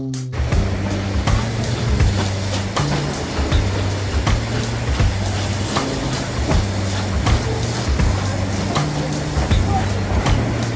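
Background music with a steady beat and bass line, laid over the steady rolling noise of a Durango and Silverton narrow-gauge steam train's passenger coaches running along the track.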